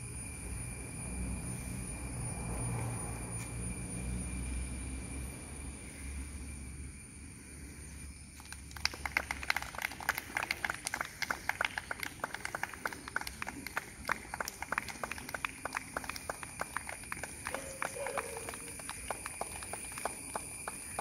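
A low rumble for the first eight seconds. Then a rapid, irregular run of sharp clicks or claps, several a second, to the end.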